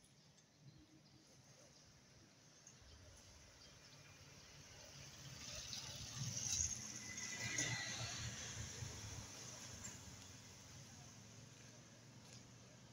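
Quiet street ambience with a motor vehicle passing: its rumble and tyre hiss swell to a peak about halfway through, then fade away.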